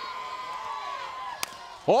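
Ballpark crowd murmuring, with one sharp crack of a softball bat hitting the ball about a second and a half in: a swing on a 3-0 pitch that sends a ground ball back to the pitcher.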